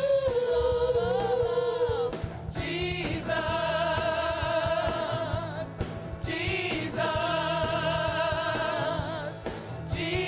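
Gospel choir singing into handheld microphones, holding three long sustained notes in harmony with short breaks between them.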